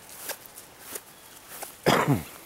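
Light footsteps through grass with soft rustling, then near the end a short, loud vocal sound that falls in pitch.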